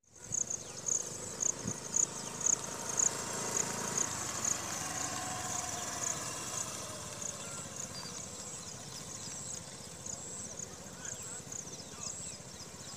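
Outdoor field ambience with an insect chirping in short, high pulses, about two a second at first and more irregular later. A faint motor scooter engine passes in the middle.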